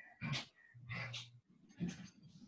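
Quiet breathy exhales and a short low hum from a person muttering under her breath, with a brief hum about a second in.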